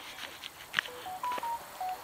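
A short run of five electronic beeps at different pitches, stepping up and then back down, with a few faint clicks among them.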